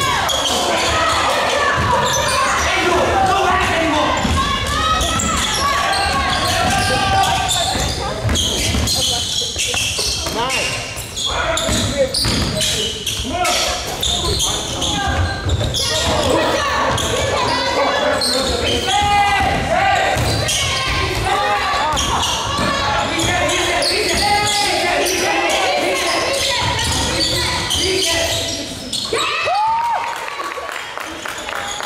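Basketball bouncing on a gym floor during a game, amid many overlapping voices of players and spectators in a large hall.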